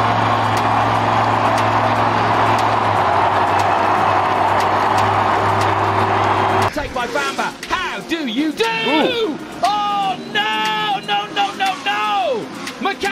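Monster truck's supercharged V8 running loud and steady in an arena. About seven seconds in it cuts off abruptly and a voice starts talking.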